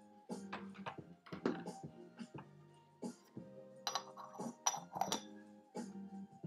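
Quiet background music with sustained tones, overlaid by a series of light clinks and knocks of teaware being handled, the sharpest about four to five seconds in.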